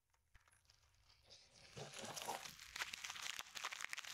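Near silence at first, then, from a little under two seconds in, plastic packaging crinkling and rustling as it is handled, with many small clicks.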